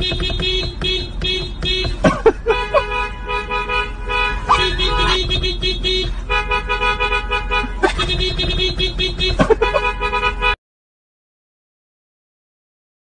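Car horns honking in long blasts that switch between two or three different pitches, with short breaks between blasts, like a rough tune played on the horns of cars stuck in traffic. The honking stops near the end.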